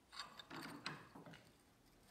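Faint metallic clicks and scrapes as a flat bar of 1095 steel is handled against and set into the jaws of a cast-iron bench vise, dying away after about a second and a half.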